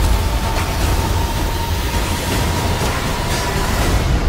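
Dense action sound effects from a film trailer: a heavy, steady low rumble with a few sharp impacts and a thin held high tone over it.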